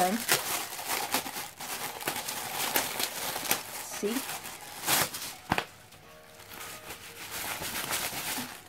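Plastic packaging crinkling and crackling as it is handled and unwrapped, in dense irregular crackles with the two sharpest near five seconds in, then quieter.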